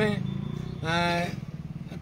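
Vehicle engine idling steadily, a low even drone under a man's voice, who holds one drawn-out vowel about a second in.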